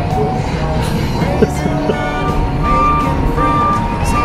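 Music playing loud from a pickup truck's stereo, over the truck's engine running.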